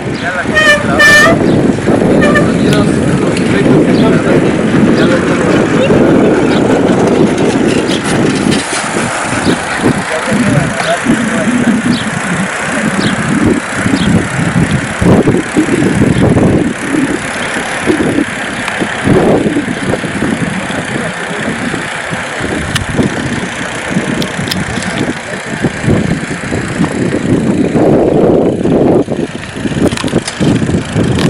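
Wind buffeting the microphone of a rider moving along on a bicycle, a loud, gusty rumble that rises and falls throughout, with indistinct voices of other riders mixed in. A short, high-pitched call or whistle comes about a second in.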